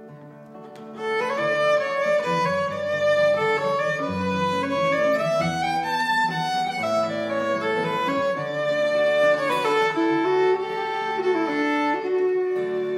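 Bluegrass fiddle playing a bowed melody over acoustic guitar accompaniment. It comes in about a second in after a brief lull, with held notes that climb and then fall back.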